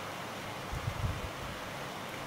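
Quiet room hiss with a few faint, soft bumps about a second in, from a pen and hand moving on sheets of paper on a desk.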